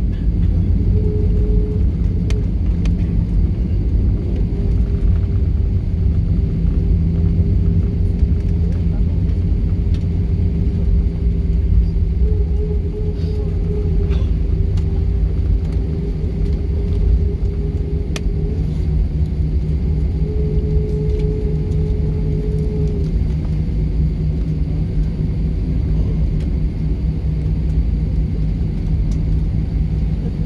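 Airliner cabin noise while taxiing after landing: a steady low rumble of the jet engines at low power and the wheels rolling on the pavement, with a steady hum that fades in and out.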